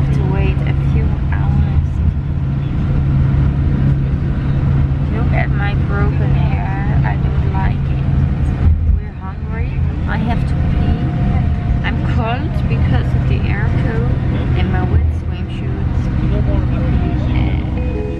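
Bus engine and road noise heard from inside the passenger cabin: a loud, steady low drone, with people's voices over it at times.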